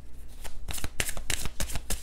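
A tarot deck shuffled by hand: a quick, irregular run of card flicks and slaps, about seven a second.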